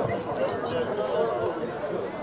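Chatter of a crowd: several people talking at once in overlapping voices, none standing out.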